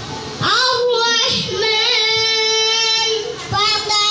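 A child singing a melodic line into a microphone, holding one long, nearly level note for about two seconds in the middle.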